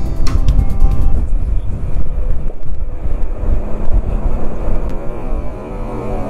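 Motorcycle riding at speed on an expressway: a steady low rumble of wind buffeting the camera microphone over engine and road noise, with some music underneath.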